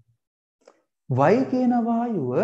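A man's lecturing voice, broken by a pause of about a second in which a faint, brief click is heard, before he speaks again.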